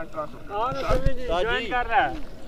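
Men's voices talking in the background, much fainter than the commentary around them.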